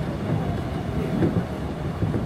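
Donghae Line commuter train running at speed, heard from inside the carriage: a steady low rumble of the wheels on the track.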